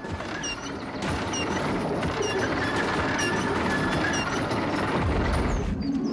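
Drawbridge being lowered by a chain windlass: a steady rattling and ratcheting of the winch and chain, with a short squeak about once a second. A heavy low thud comes near the end as the bridge lands.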